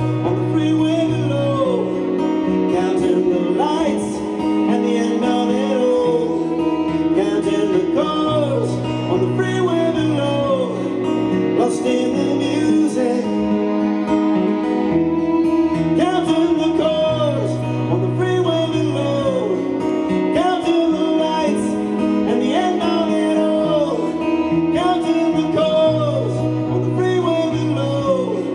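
Live acoustic trio music, mainly acoustic guitar with a repeating low bass figure, and a singing voice in parts of the passage.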